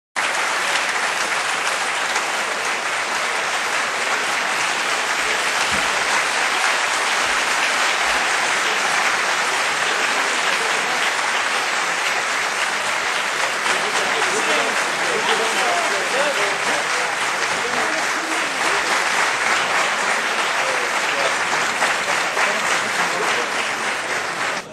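An audience applauding steadily and without a break, a dense clatter of many hands clapping, with a few voices faintly under it.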